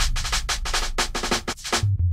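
Electronic intro music: a rapid, even run of sharp clicking percussion hits, about seven a second, over a deep bass rumble. Near the end the clicks stop and a pulsing low bass note begins.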